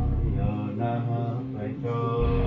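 Soundtrack music with a male voice chanting long, held notes.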